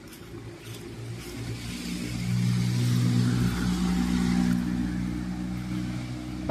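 A car's engine hum growing louder over the first two to three seconds, then slowly easing off as the vehicle passes, over a steady hiss.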